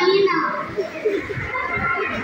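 Overlapping voices of children and teenagers, shouting and chattering with no clear words.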